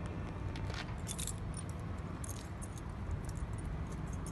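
BMW K100's inline-four engine idling with a steady low rumble. Light metallic jingles come about a second in and again a little past two seconds.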